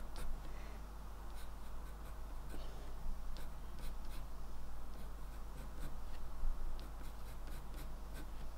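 Pencil scratching across paper in short, irregular sketching strokes.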